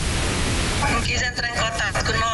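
Steady rushing noise of wind on the microphone, with a person's voice speaking from about a second in.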